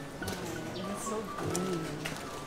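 A dove cooing in low, rising-and-falling calls, with background music under it.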